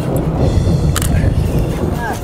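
Wind buffeting the microphone on a boat at sea: a loud, irregular low rumble, with a single sharp click about a second in.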